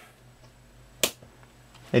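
A single sharp click about a second in as the clock's AC power is turned back on, against a faint room hum.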